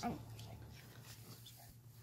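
Faint, quiet room with a steady low hum and a few soft small handling sounds, after a voice trails off at the very start.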